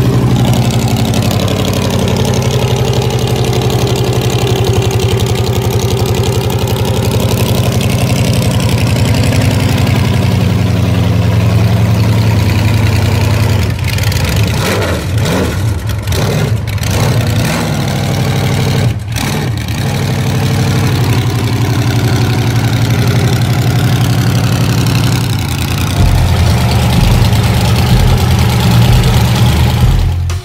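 The Munster Koach hot rod's engine idling as the car rolls slowly, a steady low exhaust rumble throughout, its pitch swaying slightly in the first several seconds.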